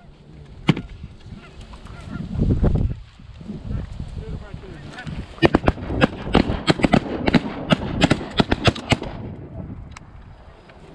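A flock of geese honking, building to a dense run of loud, rapid honks from about five seconds in until nearly the end. A low rumble comes around two to three seconds in.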